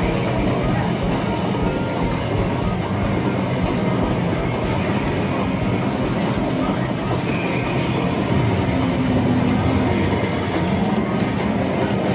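Steady, loud game-arcade din around a medal pusher machine: a continuous rumbling clatter mixed with electronic game sounds and music.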